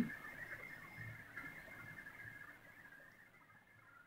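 Faint scratching of a marker pen writing on a whiteboard, dying away about three seconds in.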